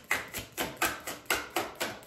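A tarot deck being shuffled by hand, the cards patting together in a steady rhythm of about four strokes a second.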